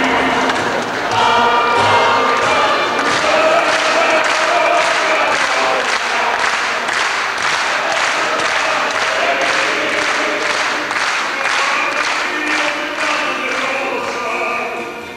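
Mixed men's and women's choir of a Polish folk ensemble singing a folk song, with steady rhythmic hand clapping in time, about two to three claps a second.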